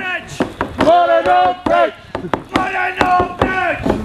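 A group of voices singing a chant-like folk song over sharp, fairly regular wooden knocks, roughly three or four a second, from struck sticks and a frame drum.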